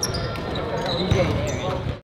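Basketballs bouncing, with indistinct voices in the background.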